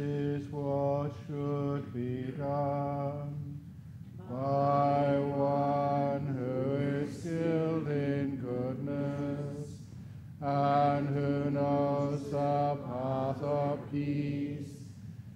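Buddhist monk chanting Pali verses in a low, nearly level recitation tone. The chant runs in long phrases, broken by short breaths about four seconds in and again about ten seconds in.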